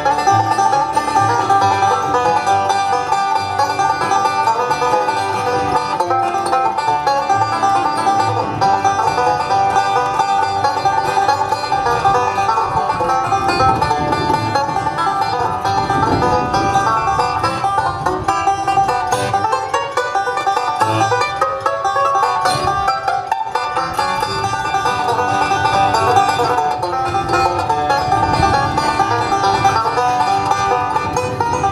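Resonator banjo picking a bluegrass tune, backed by acoustic guitar.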